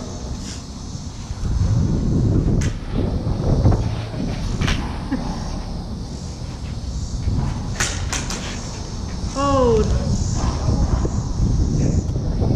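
Combat lightsabers clashing in a duel: a few sharp blade-on-blade strikes, two in quick succession about eight seconds in, over a steady low rumble. A brief falling voice call comes near the end.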